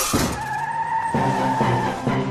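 Cartoon sound effect of a bus skidding: the tail of a crash, then one long tyre squeal. Music with a beat comes in about a second in.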